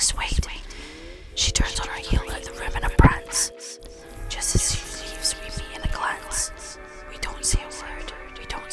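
Whispered voices layered over music, with sharp knocks and clicks scattered through. The music's held tones come in about a second in.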